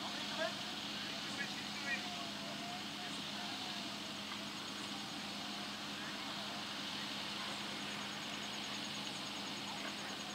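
Open-air ground ambience: a steady hiss with a constant low hum, with a few faint, distant shouts from players in the first three seconds.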